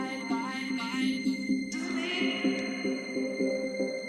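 Electronic dance music played live from a DJ controller: a quick, even pulsing pattern under held tones. A rippling higher melody drops out about two seconds in, leaving the pulse to carry on.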